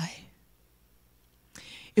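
A woman's reading voice trails off, followed by about a second of near silence. Then a short breathy intake of breath comes just before she speaks again.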